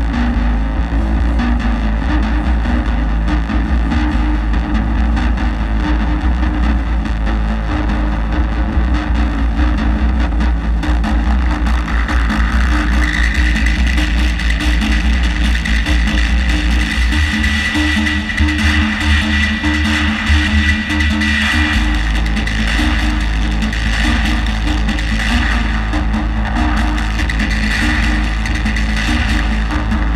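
Loud live modular-synthesizer noise music: a heavy sustained bass drone under steady mid-range tones, with a high held tone coming in about halfway. Around two-thirds of the way through, the deepest bass thins out for a few seconds and then returns.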